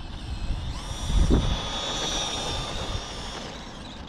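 Tamiya M05 electric RC car with a brushed motor and high-speed gearing running flat out, its high-pitched motor and gear whine coming in under a second in, holding steady, then fading as it runs away. A brief low rumble comes about a second in.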